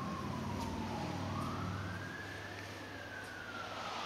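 A siren wailing, its single tone falling, rising slowly and falling again, with a low rumble underneath in the first half.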